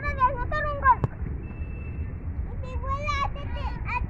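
Young children's high-pitched voices calling out in two short bursts, over a steady low rumble; a single sharp knock comes about a second in.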